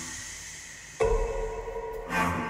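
Horror trailer score: a fading tail, then about a second in a sudden ringing tonal hit that holds and slowly fades.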